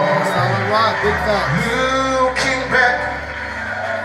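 Live gospel music from a stage performance: a male lead voice over a band, with a low bass note held for about two seconds in the middle.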